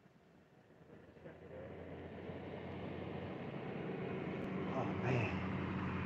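A car approaching, its engine and tyres growing steadily louder.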